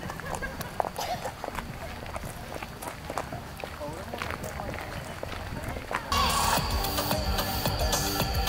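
Footsteps scuffing along a path with faint voices, then about six seconds in, music starts abruptly and louder, with a steady beat.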